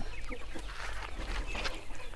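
Country chickens clucking faintly in a few short, scattered calls.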